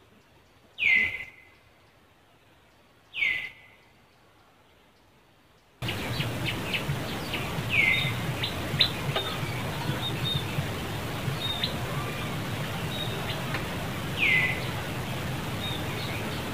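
A high, loud call that slides down in pitch and settles briefly on a lower note, heard four times. After about six seconds of near quiet, a steady outdoor background full of small chirps and clicks comes in suddenly.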